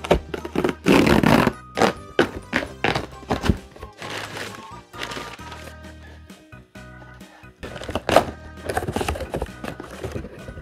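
Cardboard shipping box being opened and unpacked: cardboard tearing, rustling and repeated thunks, the loudest a noisy tear about a second in and a sharp knock near the end, over steady background music.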